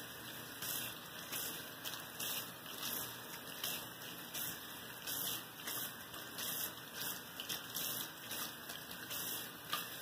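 Water running from a bathroom sink faucet over hands being rinsed in the basin, splashing unevenly as the hands move under the stream.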